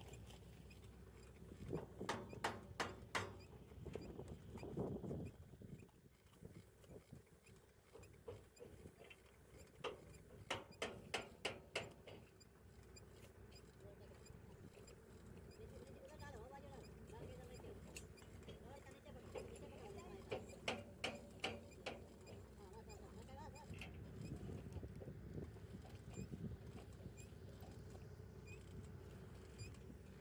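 Faint outdoor work-site ambience: a steady low hum with distant voices. Two bursts of quick sharp clicks come about two seconds in and again about ten seconds in.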